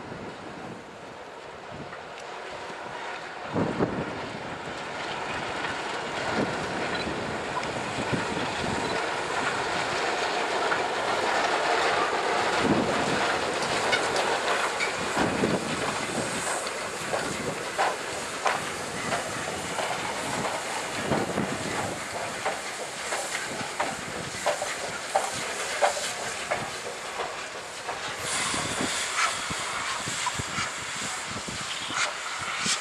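SNCF 241P 4-8-2 Mountain-type steam locomotive approaching and rolling past, its steam hiss growing louder toward the middle. Through the second half its wheels click sharply and repeatedly over the rail joints.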